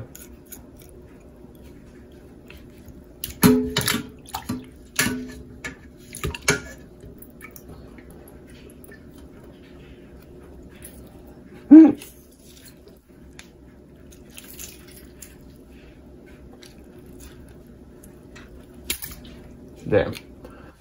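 Wet handling of raw chicken drumsticks over a bowl of water in a steel sink as the skin is pulled off by hand: drips and small splashes, with a cluster of sharp sounds a few seconds in and the loudest one, brief, near the middle, over a steady low hum.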